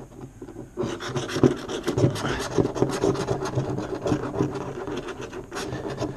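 A handheld scratching tool scraping the coating off a paper lottery scratch-off ticket in quick, repeated strokes, starting about a second in.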